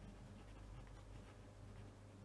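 Faint scratching of a fineliner pen on paper as a word is written, over a low steady hum.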